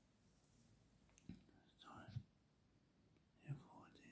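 Faint whispered voice in two short bursts, one near the middle and one near the end, over near silence.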